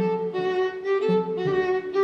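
A string trio, two upper strings and a cello, playing a classical piece live. Bowed notes change about twice a second, and the cello comes in with short low phrases under the higher lines.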